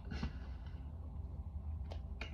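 Quiet handling sounds of hands and tarot cards over a low steady hum: a soft rustle a fraction of a second in and a single sharp click near the end.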